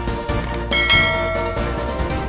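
Background music with a bell chime sound effect that rings out just under a second in, the ding for the notification bell being clicked in a subscribe animation.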